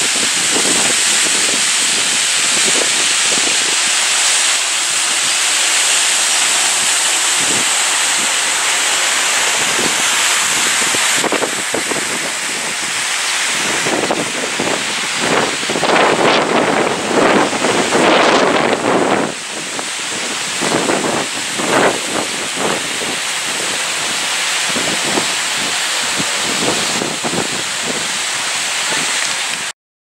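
Outdoor ambience: a steady, loud rushing hiss that swells with irregular surges through the middle stretch.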